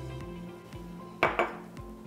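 A metal measuring spoon clinks once against a glass mixing bowl about a second in, a short knock with a brief ring, over soft background music.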